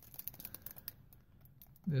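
Faint crinkling and small clicks of a clear plastic bag being handled, with an aftermarket e-brake handle inside.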